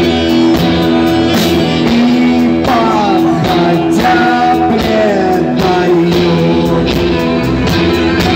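Live rock band playing at full volume: electric guitar and bass over a steady drum beat, with a lead vocal.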